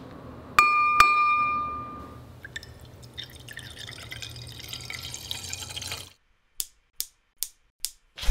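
A drinking glass rings from two quick clinks, then milk is poured into it for about four seconds. After a short silence come four short clicks, evenly spaced.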